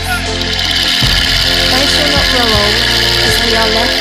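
Soundtrack of music with a voice over a steady low drone.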